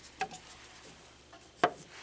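A small click, then a sharper, louder click about a second and a half in, as the plastic lid of a benchtop spectrophotometer's sample compartment is shut over the glass transmittance standard.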